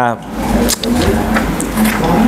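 A passing motor vehicle: a low, steady engine noise with a hiss over it.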